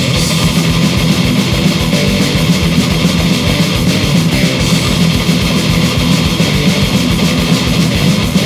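Death/thrash metal band playing an instrumental passage: distorted electric guitars and bass over a fast, even drum beat, with no vocals.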